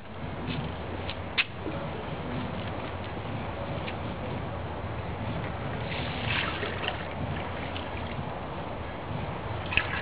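Rainwater sloshing and splashing in a plastic bucket as a glass vessel is dipped in and filled, about six seconds in, over a steady low background rumble.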